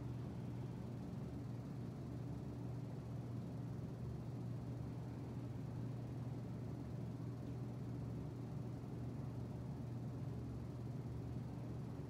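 Fan noise: a steady low hum with an even rush of air, unchanging throughout.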